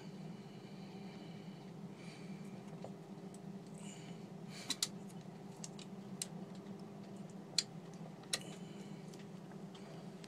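A valve spring compressor being worked on an Atomic 4 marine engine's valve spring: a few sharp metallic clicks, the loudest about three quarters of the way through, with faint squeaks over a steady low hum.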